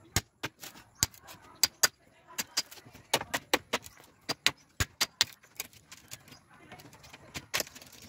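Hatchet head hammering the back of a bolo blade to drive it into a bamboo pole and split it. The strikes come as a quick, irregular run of sharp metallic clinks, about three a second, with a short pause near the end.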